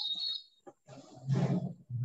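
A woman's voice over a video-call link: the end of a spoken phrase, a short gap, then a brief low, breathy vocal sound about a second and a half in, before she speaks again.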